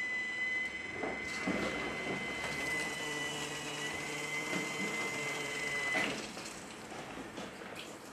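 Water-filter control valve's drive motor running with a steady high whine as it drives the 5900-BT valve into its air-release regeneration cycle, stopping suddenly about six seconds in. A fainter steady hiss follows.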